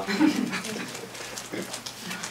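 Laughter in the room tailing off after a joke. Short chuckles fade, and faint rustles and small clicks follow.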